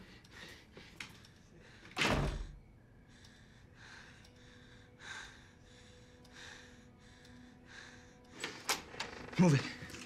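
A door shuts with a heavy thump about two seconds in. Then soft footsteps at a walking pace, about two a second.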